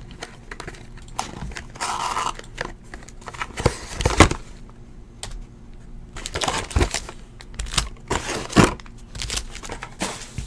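A cardboard trading-card box being opened and its foil-wrapped packs handled: irregular crinkling and rustling with scattered sharp clicks and taps, the loudest being knocks about four and eight and a half seconds in.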